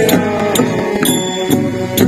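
Devotional kirtan music: chanted singing over sustained instrument tones, with a sharp metallic strike about every half second that keeps ringing briefly, like small hand cymbals keeping the beat.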